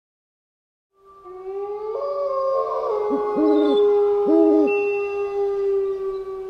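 Owl hooting twice, about a second apart, over a steady held tone that fades in about a second in.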